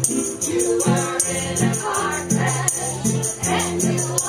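A live acoustic string band playing, with several voices singing together over a steady strummed beat and a moving bass line.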